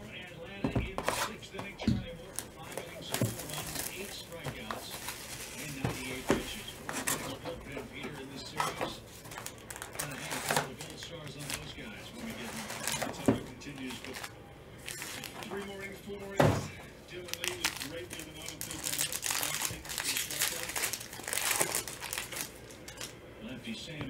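Foil wrappers of Panini Prizm football card packs crinkling and tearing as a hobby box is opened and its packs ripped, with many sharp taps and clicks of cards and cardboard being handled.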